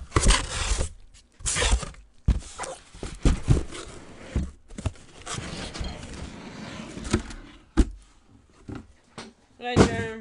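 Trading-card case packaging being handled and opened: bursts of rustling and tearing with several sharp knocks of the box, and a stretch of steadier rustling in the middle.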